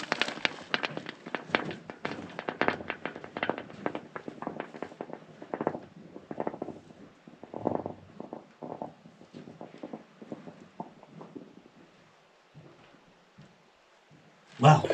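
A rock dropped into a narrow hole in the mine floor, clattering and knocking as it bounces down the shaft, the impacts growing fainter and sparser until they die out about twelve seconds in. No splash is heard at the bottom: the shaft is dry.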